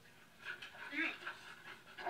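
Faint dog sounds, with one short whine about a second in.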